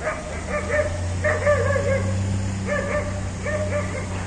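Quick, high-pitched wavering calls from an animal, repeated in four short bursts, over a steady low hum.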